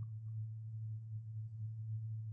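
A steady low electrical hum: one unchanging tone under faint room tone.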